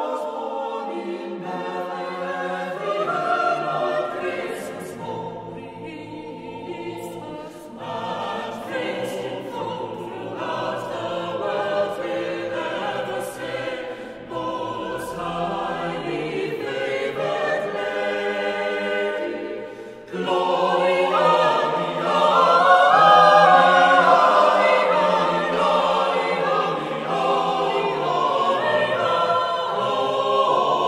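Mixed-voice chamber choir singing unaccompanied in sustained chords. There is a brief break about two-thirds of the way in, after which the choir sings louder.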